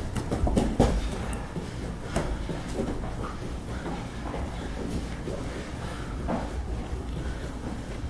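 Two grapplers scuffling and shifting their weight on a foam training mat, with irregular knocks and thuds of bodies and limbs against it, the strongest just under a second in, over a steady low rumble.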